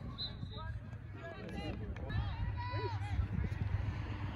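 Distant shouts and calls from soccer players and sideline spectators carrying across the field, over a constant low rumble of wind on the microphone.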